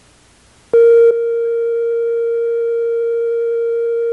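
Steady broadcast test tone, a single mid-pitched note sent with the colour bars after a TV station signs off the air, starting about three-quarters of a second in. It is slightly louder for its first moment, then holds at one level.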